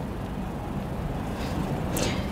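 Low, steady rumble of room noise picked up by the microphone during a pause in speech, with one short click near the end.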